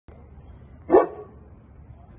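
A dog barks once, a single short, loud bark about a second in, over a low background hum.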